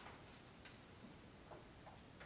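Near silence: quiet room tone with a few faint ticks and rustles of paper being handled, the sharpest click about two-thirds of a second in.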